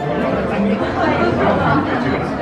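Indistinct chatter of people talking, with no clear words.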